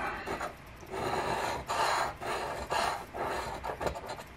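A coin scraping the scratch-off coating off a paper lottery ticket on a wooden table, in a series of short back-and-forth strokes.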